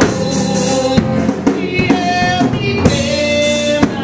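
A woman singing a gospel song into a microphone, backed by a band with drums and tambourine keeping a steady beat.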